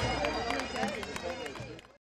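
Indistinct voices and crowd chatter across an outdoor sports field, with a few faint clicks, fading steadily and then cutting off abruptly to silence just before the end.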